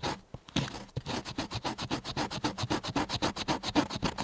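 A thin metal blade scraped rapidly back and forth across wood, about four or five strokes a second. The strokes pause briefly just after the start, then resume.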